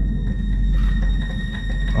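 Eerie background music: a sustained drone of steady high tones over a low rumble.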